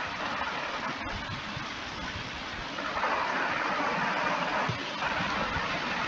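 Steady rushing background noise with no distinct events. It swells a little about halfway through.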